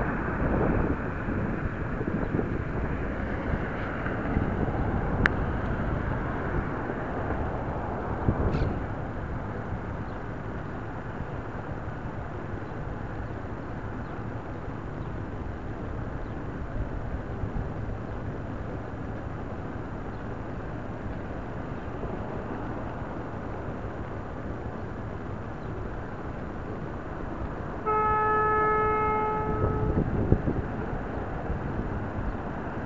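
City street traffic heard through a small spy camera's built-in microphone: a steady rush of passing vehicles. A vehicle horn sounds one steady note for about two seconds near the end.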